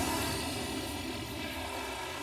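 Cartoon blast sound effect as rock bursts out of a cliff: a sudden burst that carries on as a steady rushing roar.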